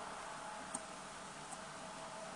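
Two faint light clicks, about three quarters of a second apart, from a small metal fly-tying tool touching the fly or vise, over a low steady hiss.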